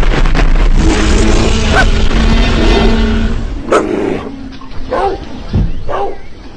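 Loud, dense rumble of a cartoon animal stampede, thick with thuds, fading after about three and a half seconds into a few short animal cries.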